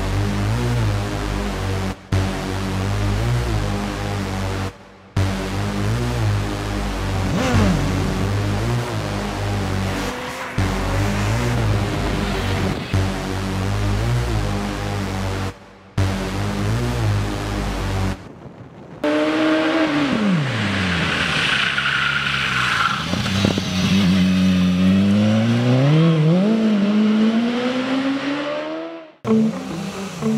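Music with a steady beat, mixed with the BMW S1000XR's inline-four engine revving, broken by several abrupt cuts. For the last ten seconds the engine is heard on its own: its pitch falls steeply, then climbs and wavers under a rough hiss.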